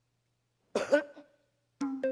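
A person gives one short voiced cough, clearing the throat, about a second in. Near the end a man's voice starts to speak.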